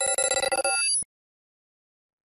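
Intro sound effect for a logo animation: a swelling chord of bright steady tones breaks into a rapid ringing flutter, then cuts off abruptly about a second in.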